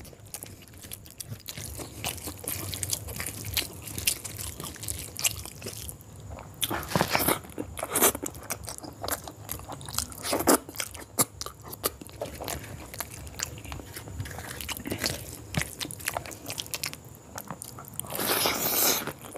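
Close-miked eating by hand: fingers squishing and mashing soft quail eggs and chicken in gravy on a steel tray, then wet, smacking chewing of full mouthfuls. The sound is a steady run of small clicks and smacks, louder in a few bursts around the middle.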